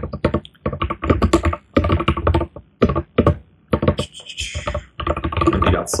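Fast typing on a computer keyboard: quick runs of key clicks broken by short pauses.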